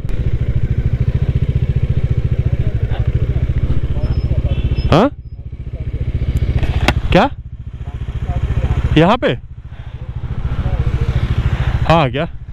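Motorcycle engine running at low speed, its loudness dropping away three times and building back up as the bike is eased along and parked.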